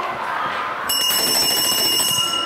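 Classroom of young children chattering, then about a second in a bell rings once and keeps ringing with a clear high tone.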